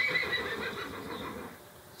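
A horse whinnying: one long call that fades away about a second and a half in.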